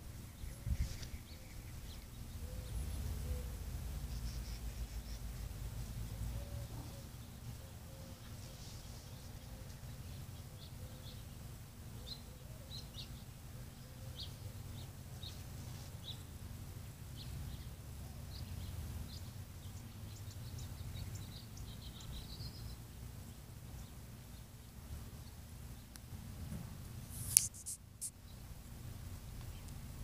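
Small birds chirping in short, scattered calls over a steady low rumble, with one sharp click near the end.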